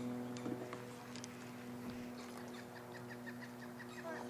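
Quiet open-air background with a steady low hum. In the second half a bird chirps a quick series of short, evenly spaced notes, about five a second.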